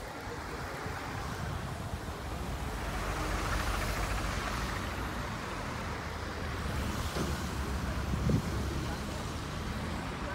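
Road traffic noise: a car passes, rising and falling from about three to five seconds in, over a steady low rumble.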